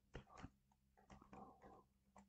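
Faint computer keyboard typing: a few keystrokes near the start, then a quick run of them about a second in.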